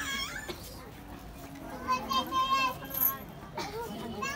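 A young child's high-pitched voice calling out twice: a short call right at the start and a longer, held one about two seconds in, over a faint murmur of lower voices.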